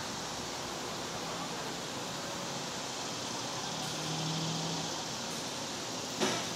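Steady outdoor background noise, an even hiss, with a faint low hum swelling briefly a little past the middle.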